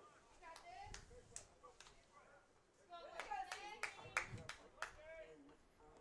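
Faint distant voices calling out, with a few sharp hand claps, in an otherwise quiet ballpark.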